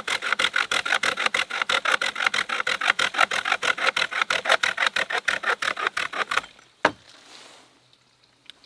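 Stanley handsaw with an interchangeable blade cutting through a green hazel stem in fast back-and-forth strokes, about six strokes a second, cutting fairly well. The sawing stops about six and a half seconds in, followed by a single sharp click.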